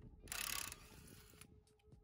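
Cordless impact wrench run on a car wheel's lug nut to loosen it: a loud hammering burst of about half a second, then a quieter run for about another half second before it stops.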